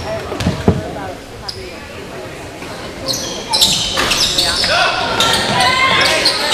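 A basketball bounced a few times on a hardwood gym floor in the first second, then, from about halfway through, sneakers squeaking on the court and shouting voices as play resumes, all echoing in the gym.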